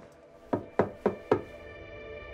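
Four quick knocks on a door, evenly spaced at about four a second, then a soft held chord of soundtrack music fading in.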